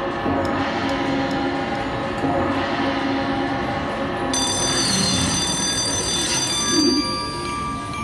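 Fu Dao Le video slot machine playing its game music and chimes as the free-games bonus triggers. A bright layer of high ringing tones joins about halfway through, a short swell comes near the end, and a few steady held tones lead into the free-games award.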